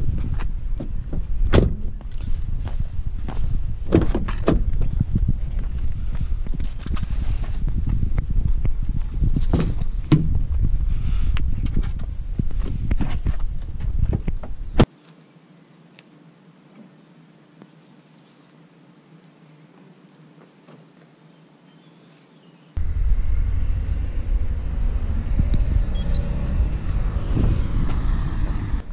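Knocks, clicks and handling noise as a person opens a parked car's door and gets out, over a steady low rumble on the camera's microphone. The rumble drops out suddenly about halfway through, leaving a much quieter stretch of several seconds, and comes back a few seconds before the end.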